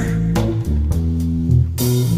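A rock band plays an instrumental passage between sung lines. A Fender Rhodes piano bass line steps through low notes under sustained Gibson G101 combo organ chords, with guitar and drums.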